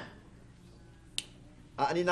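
A single short, sharp click about a second in, against a quiet pause.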